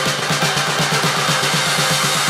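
Indie dance electronic track from a DJ mix, a fast evenly pulsing bass line running under synth layers with the kick drum dropped out.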